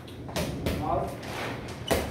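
A football thudding on a tiled floor and being struck with the leg: a few sharp knocks, the loudest near the end.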